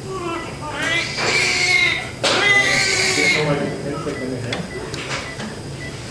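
Newborn baby crying just after birth: two cries of about a second each, then weaker, shorter cries.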